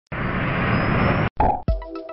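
Intro sound effect: about a second of dense rushing whoosh with a faint rising whistle, cut off sharply, then a brief burst. Near the end, electronic music starts on a deep bass beat.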